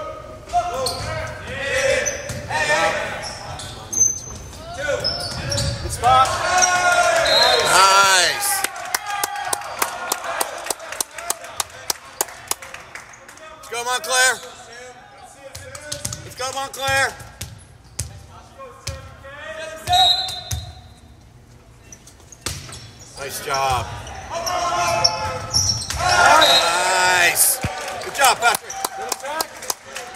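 Volleyball being played in a gym: sharp ball hits and claps ringing in the hall, with players and spectators shouting and cheering in bursts, loudest about a quarter of the way in and again near the end.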